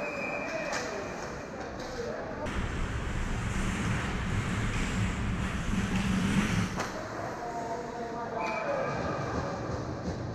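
Hockey skate blades scraping and hissing on rink ice during play, with a few brief squeals from the blades, in a reverberant arena.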